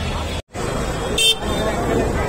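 Busy street ambience: crowd chatter and traffic noise, with a short vehicle horn toot just past a second in. The sound drops out completely for an instant about half a second in.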